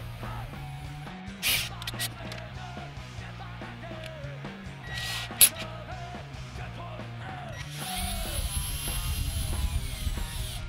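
Rock music with a steady bass line plays throughout, while a cordless drill twists a pair of speaker wires together: short bursts early on, then a longer run from about eight seconds in, its motor whine rising as it spins up and falling as it stops.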